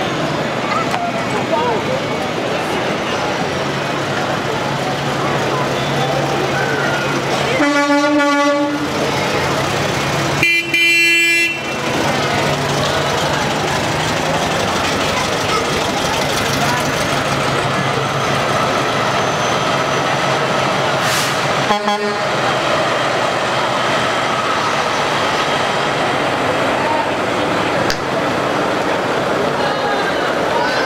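A vehicle horn honks twice, a few seconds apart, each beep about a second long, the second a little higher in pitch. A short toot follows some ten seconds later, over a steadily running engine.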